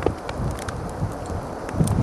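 Wind rushing over the microphone, with a few small clicks of metal climbing gear as a piece of protection on a sling is set into a rock crack.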